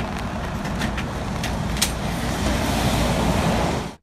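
Steady vehicle rumble, engines running and traffic, under an even hiss, with a few faint clicks.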